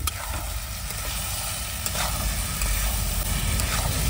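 Fried eggs and onion-tomato masala sizzling in a metal kadhai on a gas stove, while a flat metal spatula stirs and scrapes the pan. The stirring grows louder from about two seconds in.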